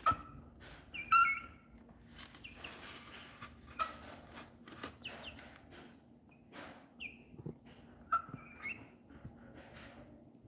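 Young H'mông black chicken giving several short, high peeps, the loudest about a second in, among scattered sharp taps of its beak pecking at grain in a plastic feed cup.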